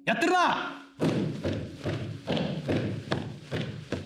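A short line of a man's speech, then a run of dull thumps, about two or three a second, each with a short ringing tail: a rakugo performer beating his hand on the floor.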